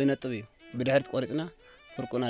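A person's voice in short phrases over background music.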